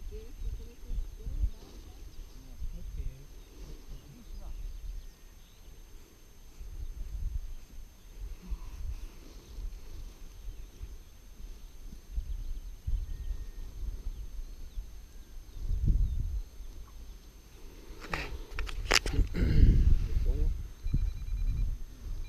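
Gusty wind rumbling on the microphone in open air, with faint, indistinct voices. A few sharp knocks come near the end.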